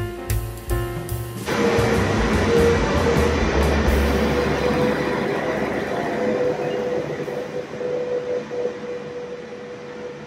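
Jazz music cuts off about a second and a half in, giving way to the steady mechanical rumble and whine of the cable car powerhouse's winding machinery, the sheaves that drive the underground haul cables. The machinery sound slowly grows fainter.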